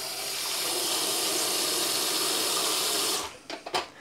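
Kitchen mixer tap running water into a stainless steel tray in the sink, a steady rush that is shut off abruptly about three seconds in, followed by a few short clicks.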